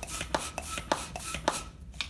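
Hand balloon pump filling a long twisting balloon, worked in quick repeated strokes, each stroke a short airy rasp.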